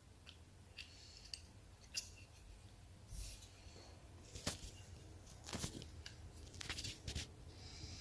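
Faint clicks and scrapes of a HiFiBerry Digi+ board being handled and fitted onto a Raspberry Pi's header pins and plastic standoffs, with a few sharper clicks in the second half.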